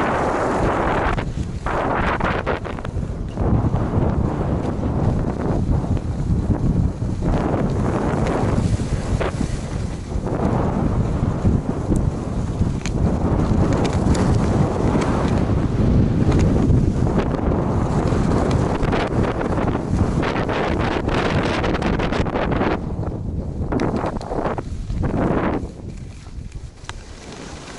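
Wind buffeting the microphone of an action camera carried by a skier at speed, a loud low rush, mixed with the hiss and scrape of skis on groomed snow that swells and fades through the turns. The level drops sharply just before the end.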